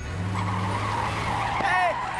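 Cartoon sound effect of a limousine speeding off, a steady tyre screech over the engine's low note.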